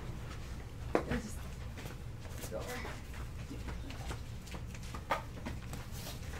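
Room tone with a steady low hum, broken by two short knocks, one about a second in and one near the end, and faint voices in the background.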